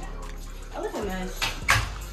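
A person's voice: a short vocal sound that slides down in pitch about a second in, followed by a brief hissing, breathy burst.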